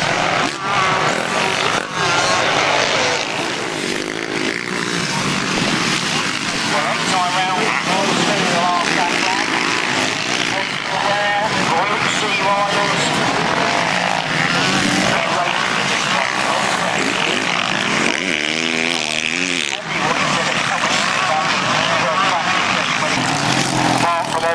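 Motocross bikes' engines buzzing and revving as they race past, the pitch rising and falling with the throttle over a steady din.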